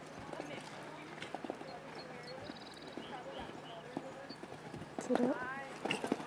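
Hoofbeats of a horse cantering on sand arena footing: soft, irregular thuds. People talk in the background, and a louder voice is heard near the end.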